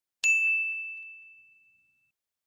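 A single bright ding, a bell-like sound effect for clicking a notification bell in a subscribe animation. It starts suddenly a moment in and rings out on one high tone, fading over about a second and a half.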